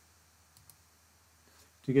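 Quiet room tone with one faint computer-mouse click a little over half a second in; a man's voice starts near the end.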